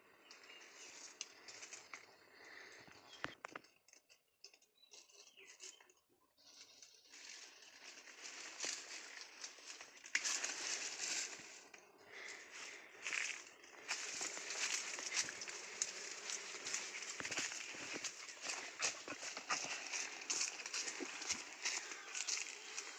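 Rustling and crackling of leaves and branches with footsteps on dry leaf litter, a busy spread of small clicks and crunches. Faint at first with a short lull, then louder from about ten seconds in.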